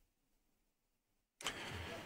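Dead silence, then about one and a half seconds in a microphone channel cuts in with a sudden steady rush of noise, just before a man's voice.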